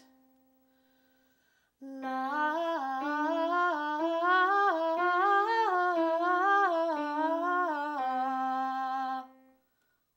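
A keyboard note sounds and fades, then a woman's voice sings a vocal warm-up in one unbroken breath: quick 1-2-3-1 note patterns, each group starting a step higher, climbing and then coming back down to end on a held note. Keyboard notes are played along with the voice.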